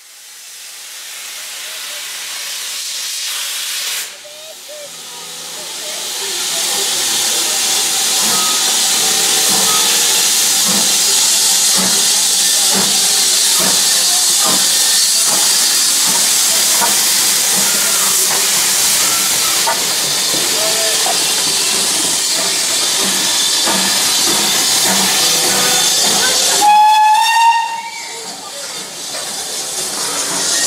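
Steam hissing loudly and steadily from BR Standard Class 4 tank locomotive 80080. Near the end comes one short, shrill steam whistle.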